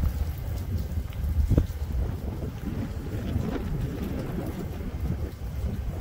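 Wind buffeting the microphone outdoors, an uneven low rumble with no clear rhythm.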